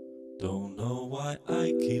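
A man singing the opening line of a slow song over a held keyboard chord. The chord fades, the voice comes in about half a second in, and the chord sounds again about a second and a half in.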